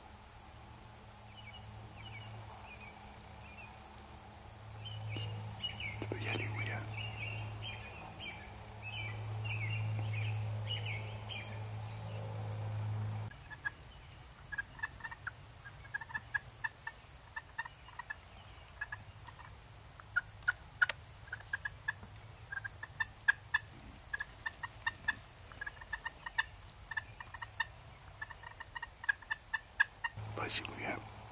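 Wild turkey (a young jake) gobbling: rattling runs of notes in the first half, loudest about six seconds in. After an abrupt change about halfway through, a long run of short, sharp notes repeats irregularly.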